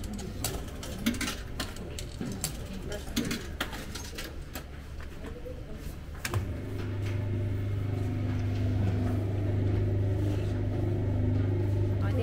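Souvenir medal-pressing machine: sharp clicks of coins going into the slot and buttons pressed, then about six seconds in its motor starts and runs with a steady hum while the press works the medal.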